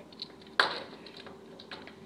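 Plastic Lego pieces clicking and knocking as they are handled on a wooden tabletop, with one sharp clack about half a second in and a few faint clicks after.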